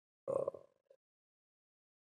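A man's brief, quiet croaky throat sound, a hesitation noise between words, about a quarter of a second in, with a tiny second click shortly after.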